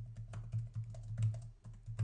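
Computer keyboard being typed on: a quick, uneven run of keystroke clicks, over a low steady hum.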